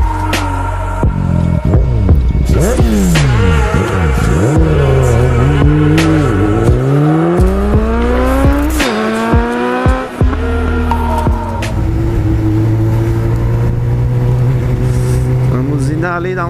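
Vehicle engine revving over music, its pitch sweeping up and down several times in the first half, then settling to a steadier note.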